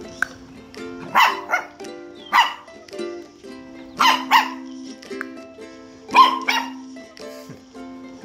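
Samoyed puppy giving about seven short, high barks, mostly in quick pairs. Ukulele background music plays under them.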